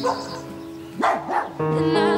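Background music with two short puppy yaps about a second in, as a black puppy plays tug with a toy.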